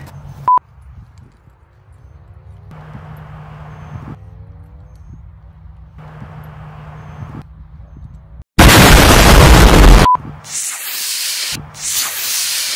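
Model rocket launch: a very loud blast-like burst lasting about a second and a half, followed by the high hissing rush of the rocket motor burning. A short beep sounds about half a second in.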